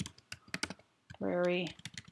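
Typing on a computer keyboard: a quick run of key clicks as a line of text is entered, with a short spoken word about a second in.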